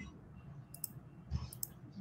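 Quiet room tone with a few faint clicks, one a little under a second in and another a little later.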